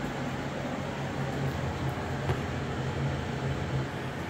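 Steady low hum with an even hiss, and one faint click about two seconds in.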